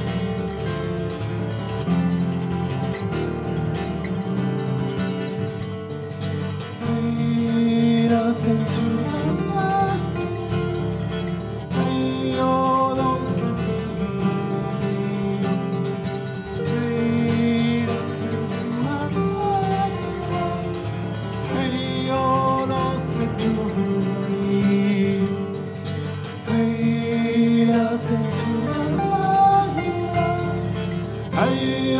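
Martin OM-42 acoustic guitar played fingerstyle, with a wordless sung melody coming in about seven seconds in and carrying on over the guitar.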